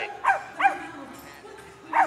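A small dog yapping: two short, high barks in the first second, and another right at the end.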